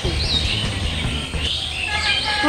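Birds chirping a few short calls over a steady low hum.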